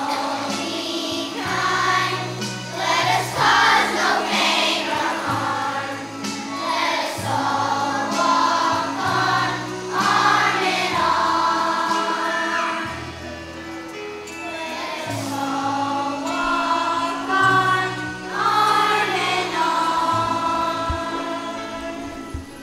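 A choir of young children singing a Christmas song together over musical accompaniment with a steady bass line.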